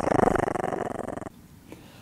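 A dog growling for just over a second, a rough rapid rattle that cuts off suddenly.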